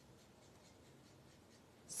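Near silence, with faint scratching of a Copic alcohol marker's brush nib stroking over cardstock as colour is blended.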